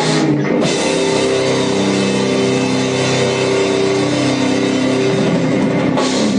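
Live rock band playing loud and steady: electric guitars and a drum kit together.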